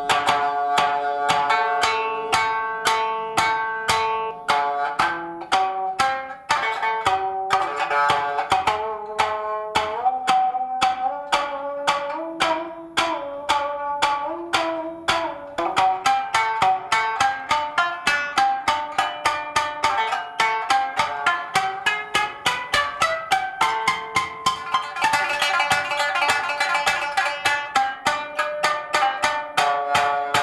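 Japanese shamisen played with a bachi plectrum: a melody of sharp, twangy plucked notes, each with a percussive snap, several strokes a second, growing denser and brighter about two-thirds of the way through.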